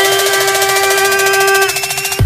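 Electronic pop remix music in a build-up: a held synth chord over a rapid, even ticking pulse, with a thin high tone slowly rising.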